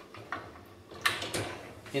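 ASKO dishwasher top spray arm bearing being pushed back into its mount on the wire upper rack: a light click, then a sharper knock about a second in.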